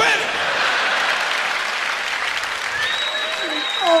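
Stand-up comedy audience laughing and applauding in a steady wash after a punchline. Near the end a man's high-pitched, drawn-out laughing cry breaks in, turning into an "Oh".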